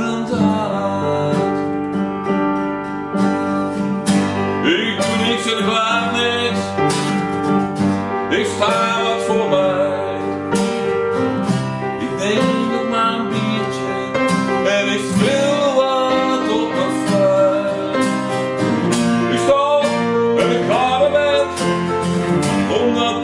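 A song played live on strummed acoustic guitar with keyboard accompaniment, and a man singing.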